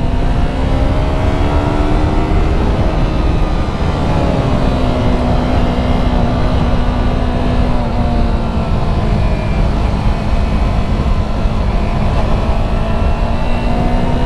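A 2018 Yamaha YZF-R3's parallel-twin engine running at steady cruising revs. Its note climbs slightly in the first couple of seconds, then eases lower and holds, under heavy wind rush on the camera microphone.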